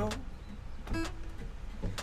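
Acoustic guitar strummed, a few chords about a second apart in a pause between sung lines.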